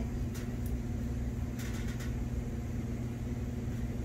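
A steady low electrical or motor hum, with a few soft scrapes of green cedar wood being shaved by hand, about half a second in and again around two seconds in.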